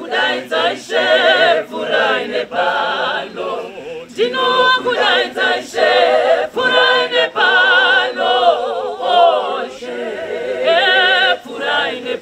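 Mixed choir of men's and women's voices singing a cappella, with a woman singing lead over them; the voices carry a marked vibrato, with short breaths between phrases.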